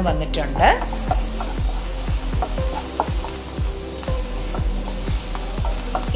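Chopped onions and green chillies sizzling in coconut oil in a pan while being stirred, the spatula scraping the pan in short strokes about three times a second.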